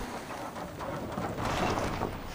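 A car rolling over a rough dirt road on a flat tyre: an irregular, rough rumble that swells about a second in and then eases.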